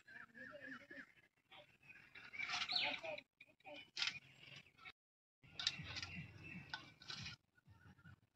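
Dry straw and cow dung being gathered by hand from the ground and dropped into a steel basin: irregular rustling and crackling, loudest about two and a half seconds in and again at four seconds.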